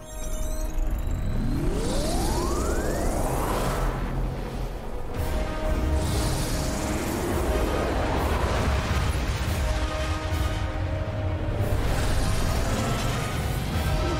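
Animated film's dramatic soundtrack score over a steady deep low undertone, with a sweep rising sharply in pitch about a second in and a slower rising sweep around the middle.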